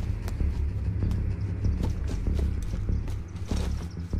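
Tense film score: a low, steady droning bass under a regular percussive tick, about three ticks a second.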